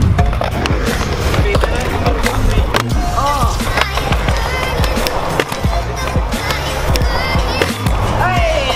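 Stunt scooter wheels rolling on a concrete skatepark surface, with repeated sharp clacks of the deck and wheels on the ramps. Background music with a steady low beat plays under it.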